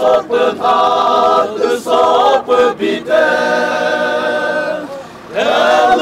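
Group of men singing a Chakhesang Naga folk song together, unaccompanied, in chant-like phrases. A long note is held in the middle, and a short break about five seconds in leads into the next phrase.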